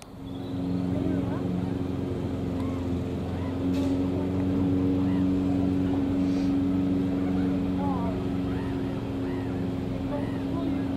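A steady, low motor or engine hum that starts about half a second in and holds one pitch, with short chirps over it.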